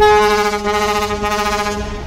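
A river passenger launch's horn sounding one steady, unwavering blast of just under two seconds, cutting off shortly before the end.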